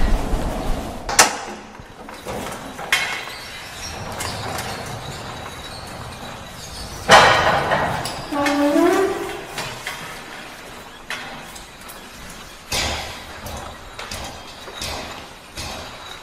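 Several sharp knocks over a steady background noise, with a short voice sound in the middle.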